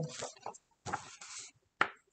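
Paper pages of a hardback picture book rustling as it is handled and raised, followed by one sharp tap or knock near the end.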